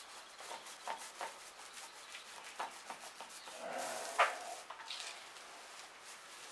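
Small paint roller rolling undercoat paint onto a plywood boat hull: a run of soft rubbing strokes. A louder stretch with one sharp click comes about four seconds in.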